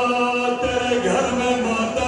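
A man's voice chanting a Muharram mourning lament in long held notes, stepping to a new pitch a couple of times.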